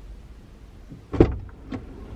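A car door shutting with one loud thump a little past halfway, followed about half a second later by a smaller knock.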